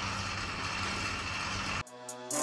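Steady room background noise with a low hum, picked up by a phone microphone after the talking stops. Near the end it cuts off suddenly and a brief pitched sound begins.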